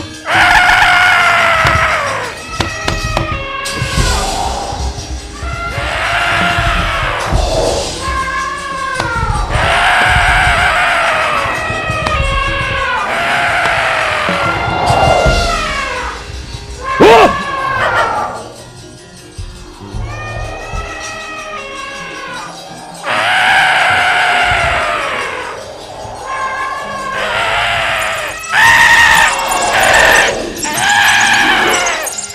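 Live wayang kulit performance sound: a run of loud, high wailing cries, each rising then falling in pitch and coming about every two seconds, over steady drumming.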